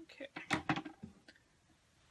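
A woman's voice saying "okay".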